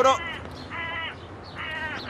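The end of a man's shout at the start, then a crow cawing twice, two short calls about a second apart.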